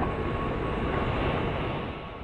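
A steady, fairly loud rushing noise, strongest in the low range, with a faint steady tone above it; it eases off a little near the end.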